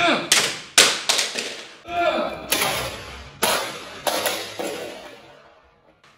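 A plastic Stackmat cubing timer hurled against a wall: a run of about half a dozen loud crashes and clatters spread over the first five seconds, each dying away, fading out near the end.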